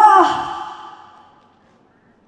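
A woman's drawn-out, pitched sigh into a microphone, rising then falling in pitch. It ends about half a second in, fades out in the room's reverberation over about another second, and near silence follows.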